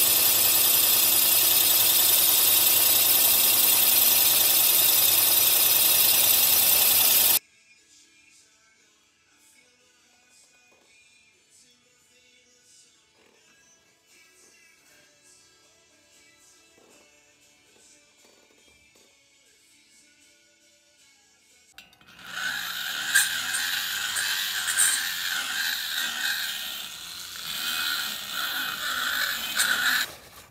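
A milling machine boring out a VW dual-port cylinder head to take larger cylinders: a loud, steady cutting sound that cuts off suddenly about 7 seconds in. Faint music follows. About 22 seconds in, a hand-held die grinder starts porting the valve pocket, its sound rising and falling as it is pressed into the metal.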